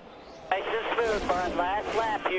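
A man speaking over a hissy background, starting about half a second in after a brief lull.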